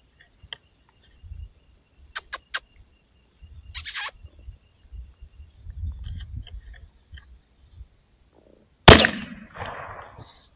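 A single rifle shot about nine seconds in, the loudest sound, followed by a short echoing tail. Before it come a few faint short clicks and a brief sharper noise about four seconds in, over a low rumble.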